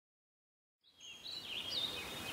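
Birds chirping over a faint outdoor hiss, fading in after about a second of silence: a short run of high, wavering calls.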